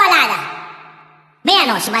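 Vocal samples in a Vinahouse dance mix with no beat under them: a short voice phrase dies away in a long reverb tail, then a new vocal chop cuts in about one and a half seconds in.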